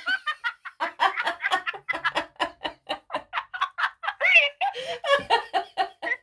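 A woman laughing hard in quick, short pulses, about six to eight a second.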